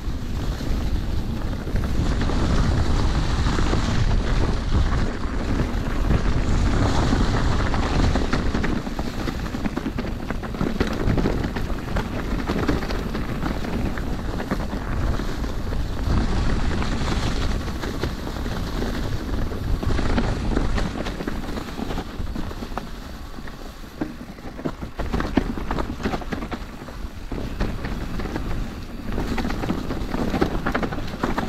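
Orbea Occam mountain bike riding down a leaf-covered forest trail: knobby tyres rolling over dry leaves and dirt, with frequent rattles and knocks from the bike over bumps. Wind buffets the camera microphone with a steady low rumble.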